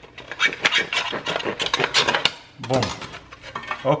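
Serrated bread knife sawing through a soft bun held in a clear plastic bagel-slicer guide: a run of quick, rasping back-and-forth strokes, the blade rubbing against the plastic. The strokes stop about two-thirds of the way in, and a short voiced sound follows.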